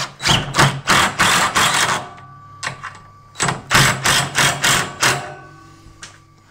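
Cordless drill driving a screw down through a plywood top into a steel frame, in two runs of about two seconds each. Each run is a motor hum with quick repeated knocks, and a faint metallic ring follows.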